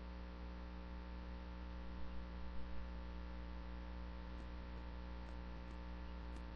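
Steady, faint electrical mains hum, with a few slight soft sounds about two to three seconds in.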